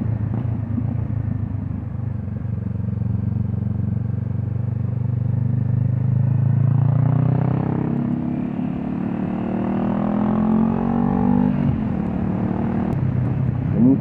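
Honda CB500X's parallel-twin engine, with a GPR Furore Nero exhaust, heard on board while riding. It runs steadily at first; from about six seconds in its pitch rises as it accelerates, then falls back a little after eleven seconds.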